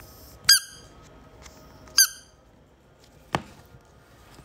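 Yellow rubber duck squeaky toy squeezed twice, giving two short, high squeaks about a second and a half apart. A single sharp click follows near the end.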